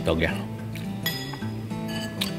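Background music with steady held notes, and about a second in a single clink of a metal fork against a ceramic plate.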